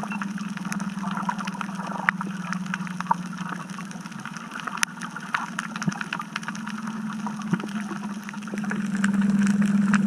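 Underwater sound: a steady low hum that grows louder about nine seconds in, with scattered sharp clicks and crackle.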